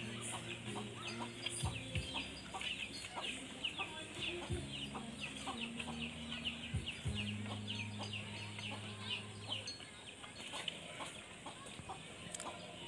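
Chickens cheeping and clucking, a steady run of short high calls about three or four a second. A few sharp knocks and a low hum that comes and goes sound underneath.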